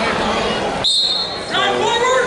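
Wrestling referee's whistle: one steady, high-pitched blast starting a little under halfway through and lasting just over half a second, with voices in the gym before and after it.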